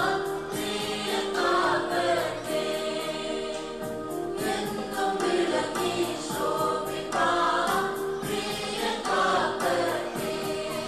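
Church choir singing a felicitation song, with long held notes.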